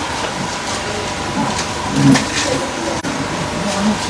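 Steady background noise with a faint steady tone, and a short murmured "mm" from a person about two seconds in.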